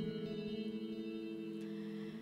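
Electric guitar chord ringing out, held steadily and slowly fading, with no singing over it.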